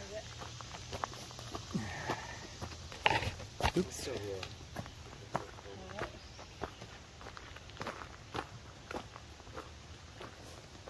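Footsteps walking on a dirt forest trail covered in dry leaf litter, a scuff or crunch every half second to a second. A few brief bits of a person's voice come in about three to four seconds in.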